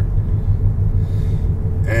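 Steady low rumble of a moving car heard from inside the cabin, road and engine noise. A man's voice starts up just at the end.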